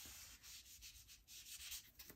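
Whiteboard eraser rubbing marker writing off a whiteboard, faint, in a run of uneven back-and-forth strokes.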